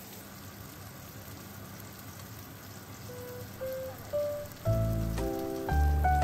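Food sizzling steadily in hot oil in a frying pan. About three seconds in, background music starts with a few single notes, then full chords and bass near the end, louder than the sizzle.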